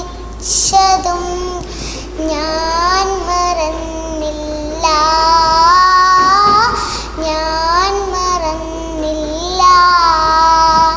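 A young girl singing a Malayalam film-style song solo, in phrases with long held notes that slide and bend in pitch.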